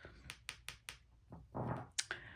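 Soft clicks and taps of hands handling a deck of tarot cards: four quick clicks in the first second, a brief soft sound, then one sharper click at the end.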